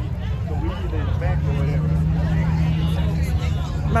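Motorcycle engines idling, with a steady low hum settling in about a second in, under a babble of people talking.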